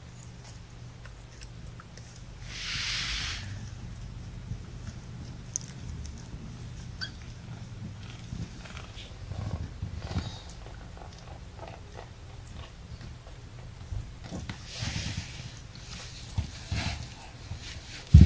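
Kittens shuffling and nursing against their mother cat on fleece bedding: soft rustling and small clicks over a low steady hum. Two brief, louder hissy rustles come about three seconds in and again about fifteen seconds in.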